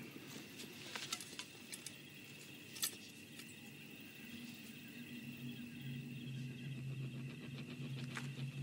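Faint night ambience with a steady high insect chirring and a few soft clicks. A low steady drone comes in about four seconds in and swells slightly.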